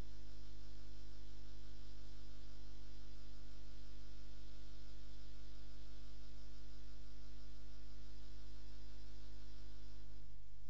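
Steady electrical mains hum with a stack of evenly spaced overtones, unchanging throughout.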